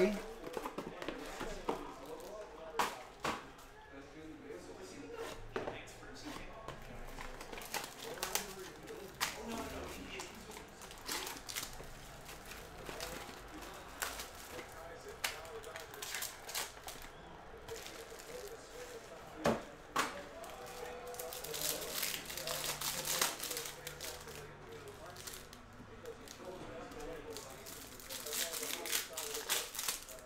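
A Panini Absolute basketball card box and its cellophane-wrapped pack being opened by hand. The plastic wrapper crinkles and tears and the cardboard rustles, with scattered sharp taps and clicks; the loudest comes about two-thirds of the way through.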